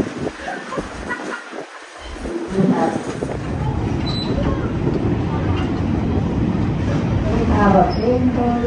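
Passenger train rolling, heard from aboard: a steady rumble of wheels and cars that thickens about three seconds in as the train runs onto a bridge over the river. Voices of people talking in the first few seconds.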